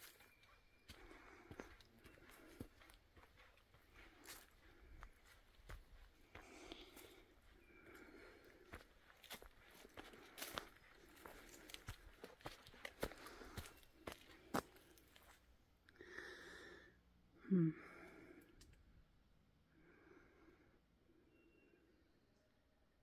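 Faint footsteps through forest undergrowth, with scattered sharp cracks of twigs and leaf litter and a woman's soft, regular breathing close to the microphone.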